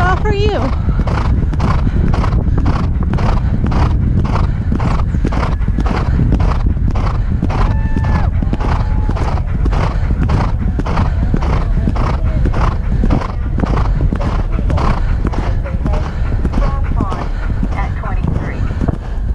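Thoroughbred galloping on turf: hoofbeats in a steady, even stride rhythm, heard from the saddle over a heavy rumble of wind on the helmet-mounted microphone.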